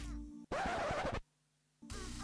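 Faint background music broken by a short scratchy burst of noise, an edited-in sound effect, followed by about half a second of dead silence before the music comes back.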